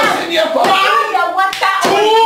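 Loud, animated voices exclaiming, with a couple of sharp hand smacks about one and a half seconds in.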